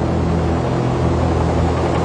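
AH-64 Apache attack helicopter's engines and rotor heard from the cockpit as a steady low drone with a haze of hiss over it.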